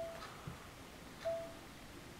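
Two faint, short electronic beeps about a second apart, each a single pure tone, over quiet room tone.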